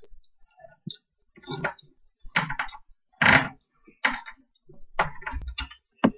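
Handheld manual can opener cutting around the lid of a small tin of olives, clicking and scraping in short, irregular bursts as the key is turned again and again.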